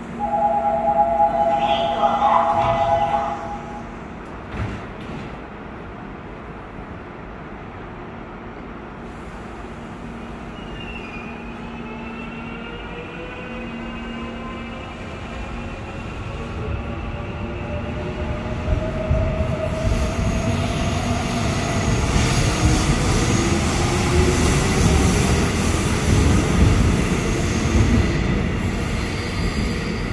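A Seoul Subway Line 4 electric train pulling out of the station. A steady two-tone signal sounds for a few seconds at the start. Then the train's motor whine rises in pitch as it accelerates away, with wheel and running noise growing louder.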